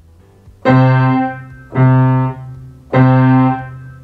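A keyboard playing the same note three times, each held briefly and then released into a short gap: quavers alternating with quaver rests.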